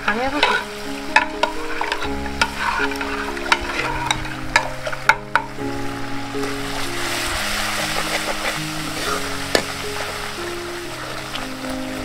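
A metal ladle clinks and scrapes against cooking pots, with sharp clicks through the first half, while food sizzles in a wok; the sizzle is strongest in the second half. Soft background music with long held notes plays underneath.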